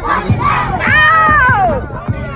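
A group of children shouting and chanting together in celebration, with one long held yell about a second in that drops in pitch as it ends.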